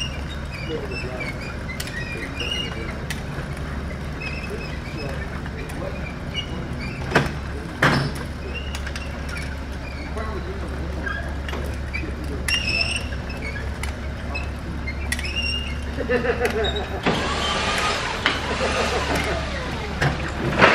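Turbo Systems chip conveyor running: the three-phase gear motor hums steadily while the hinged steel belt travels, with two sharp clanks about seven and eight seconds in. The running gets louder and rougher in the last few seconds.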